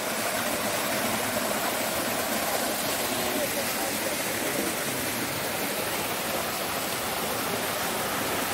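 A small waterfall cascading into a stream pool, a steady, even rush of splashing water.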